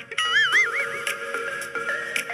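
A horse whinny, its pitch wavering up and down for about a second, over background music.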